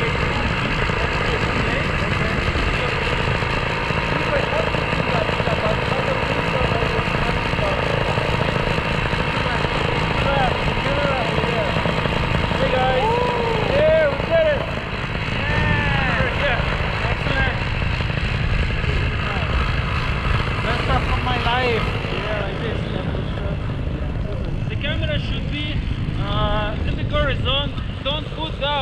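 Tandem paramotor's backpack engine and propeller running steadily in flight, a constant drone.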